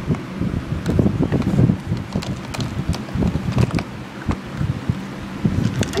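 Dog working a plastic paw-shaped puzzle toy for kibble: irregular clicks and knocks of plastic caps and shell, over low rumbling handling noise on the microphone.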